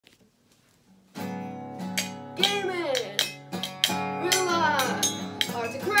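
After about a second of near silence, a guitar starts playing. Over it, a voice slides down in pitch three times.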